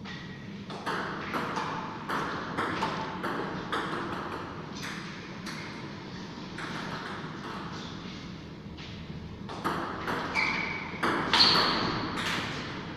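Table tennis ball being struck back and forth: sharp clicks of the ball off the bats and bounces on the table, about two a second. There are two runs of hits with softer, sparser taps between them, and a couple of short high squeaks near the end.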